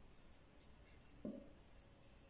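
Marker pen writing on a board: faint scratchy strokes in two short runs, early and near the end. A brief low hum sounds just after the middle.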